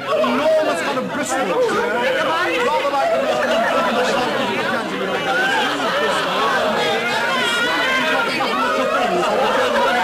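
Many voices talking over one another in a steady babble of chatter, with no single voice clear enough to make out.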